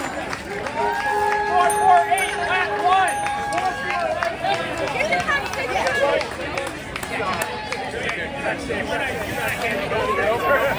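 Several people's voices calling out and cheering at once. One long held note, steady in pitch, starts about a second in and lasts about three seconds.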